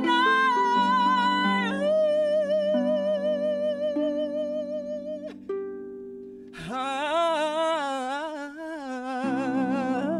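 A woman singing long held notes with vibrato over a concert harp she is playing, the harp's plucked notes ringing beneath. She holds one phrase for about five seconds, breaks off, then holds a second phrase a second later, and the harp carries on alone near the end.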